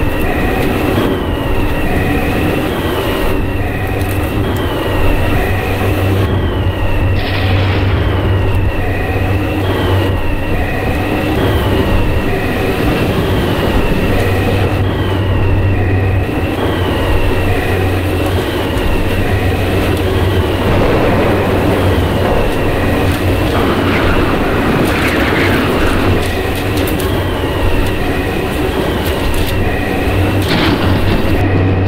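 A magic-spell sound effect: a loud, steady rumble under a constant high tone, with a falling whine that repeats about once a second. A brief brighter swell comes about seven seconds in, and another a few seconds before the end.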